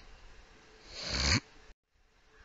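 A speaker's breath drawn in close to the microphone, swelling over about half a second and stopping sharply.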